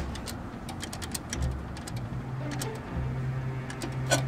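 A quick run of sharp clicks from a payphone being worked to place a call, coins going into the slot and buttons being pressed, over a steady low hum.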